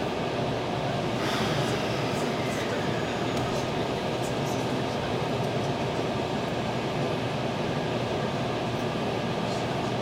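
Nishitetsu electric train pulling away from a station, heard from inside the passenger car: steady running noise, with a falling tone that starts about a second in.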